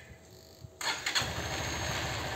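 Honda Bros 160 motorcycle's single-cylinder engine started by remote control, without the key. After a quiet first second, the electric starter cranks briefly and the engine catches and settles into a steady idle.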